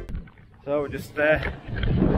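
A man's voice saying a few short words, with wind rumbling on the microphone.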